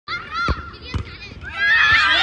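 Children shouting and calling out over each other, with two dull thumps about half a second apart early on; the shouting swells to a loud, dense cheer near the end.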